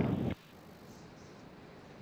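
The last syllable of a band-limited voice call-out on the launch radio net, then a faint steady hiss.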